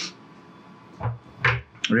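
A few short clicks and handling knocks from hands on a DJI FPV remote controller just after it is switched on, with a sharp click near the end.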